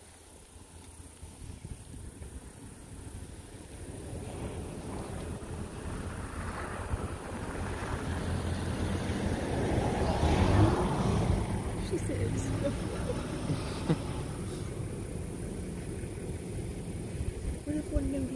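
A vehicle passing on the road: its noise builds slowly, peaks about ten seconds in, then fades.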